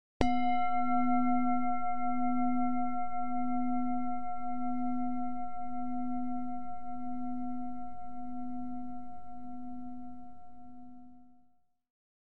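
A singing bowl struck once, ringing with a low tone that wavers in a slow beat and several higher overtones. The ring dies away slowly and fades out just before the end.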